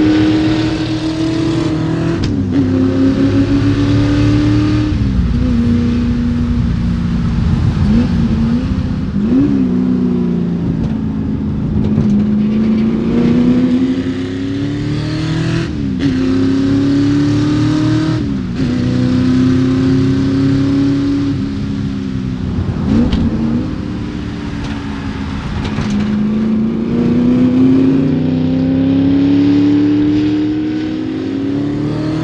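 1965 Shelby GT350's 289 V8 driven hard on a race track, revving under load. Its pitch climbs, falls away sharply and climbs again, over and over.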